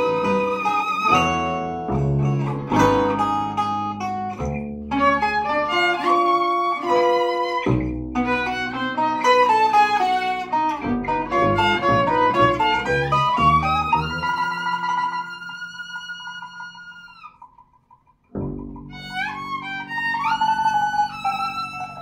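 Free-improvised acoustic trio of violin, guitar and double bass playing busy plucked and bowed notes. About two-thirds through, a long held high note fades into a brief near-silence, then sliding bowed notes and low bass notes come back in.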